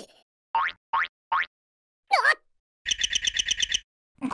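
Cartoon sound effects: three quick rising boing-like chirps, then a single falling glide, then a fast warbling trill of about a dozen pulses that stops suddenly.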